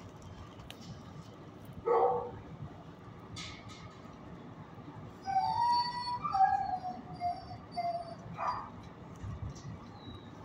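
Dogs in shelter kennels: a single bark about two seconds in and another near the end, with a drawn-out wavering whine or howl in between.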